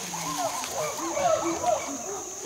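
Tropical rainforest ambience: many short animal calls and chirps overlapping, over a steady high insect drone.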